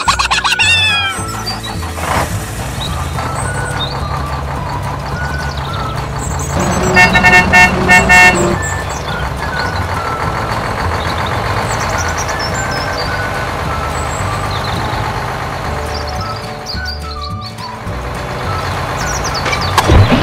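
A motor-vehicle engine sound effect running under background music, with a pulsing, horn-like honking that starts about seven seconds in and lasts about a second and a half.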